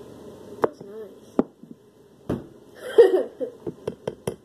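Sharp taps on a bowl of cornstarch slime mixture: a few spaced knocks, then quicker ones near the end, which sound hard. A short voice sound comes about three seconds in.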